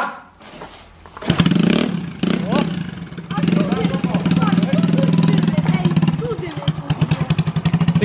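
A small scooter engine starting about a second in and then running loud and fast with rapid firing pulses, its revs rising and falling now and then as the throttle is worked.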